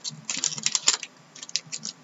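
Hockey trading cards being flicked through and handled, a quick run of light clicks and snaps in the first second, then a few more near the end.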